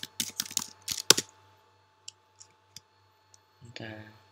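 Fast typing on a computer keyboard for about a second, ending in one louder keystroke, then a few faint, spaced-out clicks.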